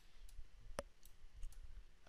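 A few faint, sharp computer mouse clicks as the chart is scrolled, the loudest a little under a second in.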